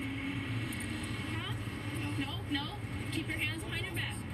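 Indistinct talking over a steady low vehicle hum.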